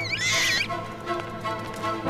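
Background orchestral music with steady held notes, broken in the first half second or so by a high-pitched, wavering animal call.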